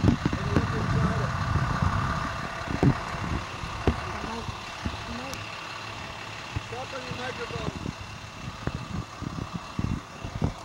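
Muffled background voices over a steady, engine-like hum, with a few short knocks.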